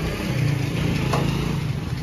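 A motor vehicle engine running steadily with a low hum, mixed with the rustle of leafy branches being handled and a short snap or knock about a second in.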